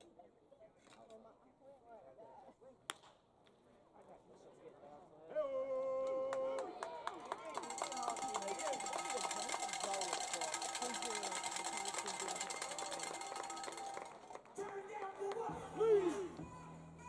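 Ballpark public-address music: a held note starts about five seconds in, then a tune plays and stops near the end. Before it there is quiet crowd murmur and one sharp crack.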